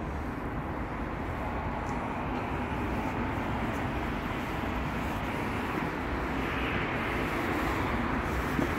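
Steady outdoor street noise of road traffic, growing slightly louder near the end.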